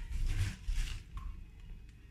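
Faint rustling and handling noise with a low rumble, dying down after about the first second.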